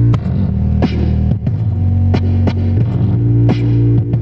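Live electronic hip-hop music played on keyboard and effects: a deep, steady synth bass line that shifts notes a couple of times, punctuated by sharp snare-like hits about once a second.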